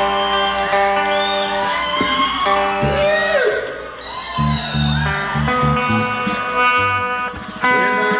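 Live country band vamping on stage: guitar chords held and strummed, with sliding, bending notes over them and bass notes coming in about three seconds in.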